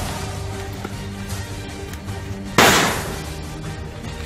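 Background music with steady held tones, broken about two and a half seconds in by a single loud bang for a grenade going off, trailing off over half a second.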